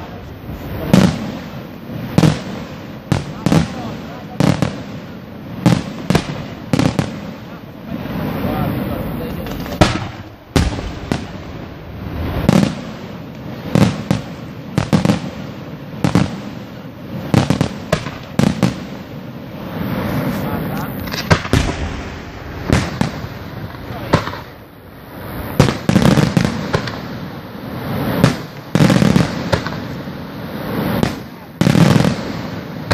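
Aerial firework shells bursting in quick succession, a sharp bang every second or so with rumble between, the bangs coming thicker in the last few seconds.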